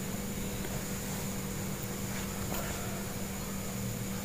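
Steady low hum with a faint hiss, constant throughout with no distinct events: background room noise.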